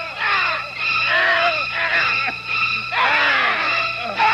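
A man screaming in staged pain, a string of loud cries that each fall in pitch, repeated several times.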